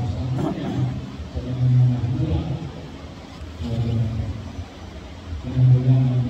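A man's voice preaching in slow, drawn-out phrases with short pauses between them.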